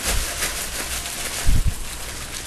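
Shredded coconut being poured out of a plastic bag onto a plate, with the bag rustling; a dull low thump about one and a half seconds in.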